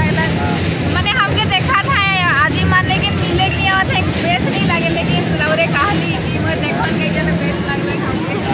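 Voices talking over a steady low hum.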